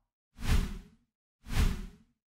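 Two whoosh sound effects, each a short sweep of about half a second, about a second apart.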